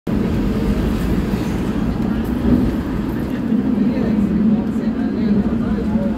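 Hong Kong double-decker tram running along its street tracks, heard on board from the upper deck as a steady low rumble.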